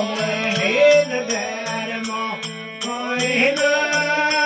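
Rajasthani devotional bhajan: a man sings over a harmonium and the drone of a tandura. A steady jingling beat runs through it at about two and a half strokes a second.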